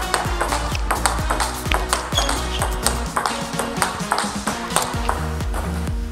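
Table tennis rally: the ball clicking in quick succession off the rackets and table as forehand loops are hit against blocks with a Pongfinity Sensei racket. Background music with a steady bass runs underneath.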